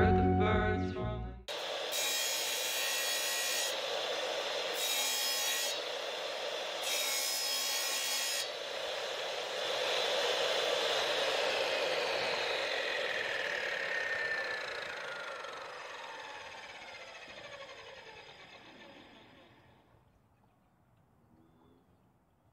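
Electric wet tile saw cutting a tile on a worn, dull diamond blade, with three spells of harsher grinding in the first eight seconds. The motor is then switched off and the blade spins down, its whine falling in pitch and fading over about ten seconds until it stops.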